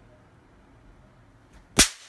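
A single sudden, sharp crack close to her ear, about two seconds in, loud enough to hurt: "Ai, meu ouvido". Before it there is only quiet room tone.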